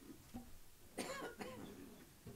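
A person coughing once, faintly, about a second in.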